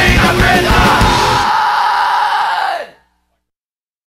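Punk rock song with yelled vocals ending: the drums and full band cut off about a third of the way in, leaving a held chord that rings on, fades and sags in pitch as it dies out, followed by dead silence.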